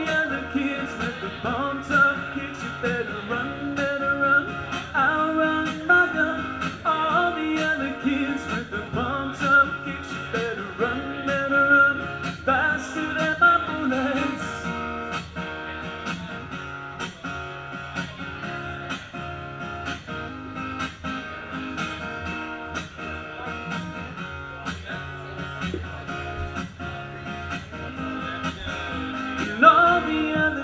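Live solo music: a guitar playing an instrumental stretch of a song with no sung words, growing softer from about halfway through.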